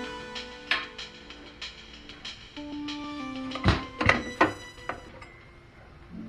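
Background music with held, plucked-guitar-like notes, broken a little past the middle by a few loud knocks in quick succession.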